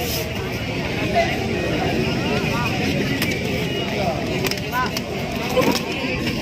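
Spectator crowd at a kabaddi match: many overlapping voices talking and calling out at once, with a few sharp clicks in the second half.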